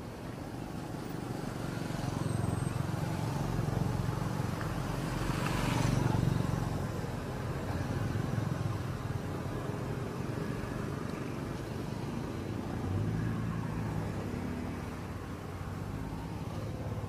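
A motor vehicle passing, its engine and tyre noise building to loudest about six seconds in and then fading, with an engine hum still running afterwards.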